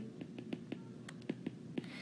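Stylus tip tapping and clicking on an iPad's glass screen while handwriting, faint irregular clicks several a second.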